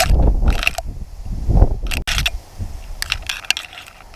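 Tall dry grass brushing and scraping against the camera and microphone in several short rustling swishes as it is pushed through, with wind rumbling on the microphone for about the first second.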